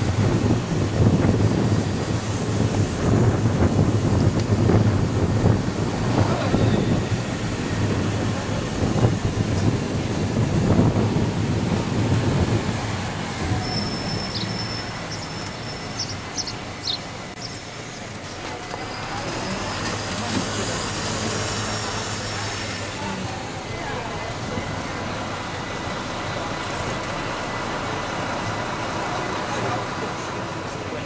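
Tour bus driving through city traffic: a steady engine drone with road and traffic noise, rough and loud for the first dozen seconds, then quieter. A few short high squeaks come about halfway through.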